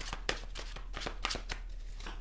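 A deck of tarot cards being shuffled by hand: a quick, irregular run of short card clicks, several a second.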